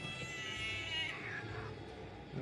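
A house cat giving one long, high meow that slides down in pitch at the end, lasting about a second and a half.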